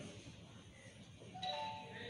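A short chime-like ringing tone about one and a half seconds in, over faint room noise.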